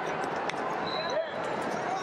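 Wrestling shoes squeaking on the mat during a scramble, over the steady din of voices in a large hall, with a sharp tap about half a second in.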